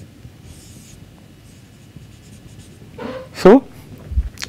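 Marker pen drawing on a whiteboard: a few short, faint strokes in quick succession.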